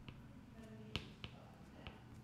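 Faint clicks of a stylus tip tapping on a tablet screen during handwriting, about four in two seconds, the sharpest about a second in.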